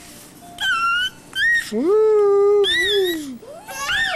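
Baby squealing and vocalizing: two short high-pitched squeals, then a long drawn-out call about two seconds in, and another rising squeal near the end.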